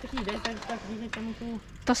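A voice holding a drawn-out, wavering hum for about a second and a half, over a steady hiss of wind and tyres from a bicycle in motion.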